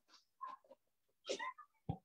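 Mostly quiet room tone with two brief, faint murmurs of a man's voice, about half a second in and again a little after one second.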